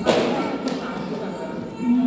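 A sharp knock as a marker strikes the hard plastic bin, followed by a lighter tap just over half a second later, with voices murmuring underneath.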